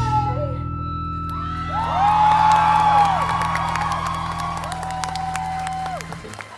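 Rock band's last chord ringing out at the end of a song, a steady low drone after the drums stop. Crowd whoops and cheers over it about two seconds in and again near the end. The chord cuts off at the very end as clapping starts.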